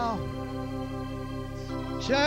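Organ holding a steady chord between sung phrases, a woman's sung note falling away just at the start.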